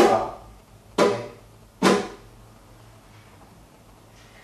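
Nylon-string flamenco guitar: three separate rasgueado strokes about a second apart, each a sharp flick of a fingernail across the strings, with the chord left to ring and fade. The four-stroke rasgueado is played slowly, one finger at a time.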